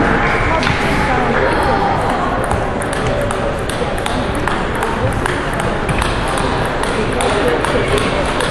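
Table tennis balls clicking off bats and tables from several matches going on at once, a stream of irregular sharp ticks over a steady murmur of voices in a large hall.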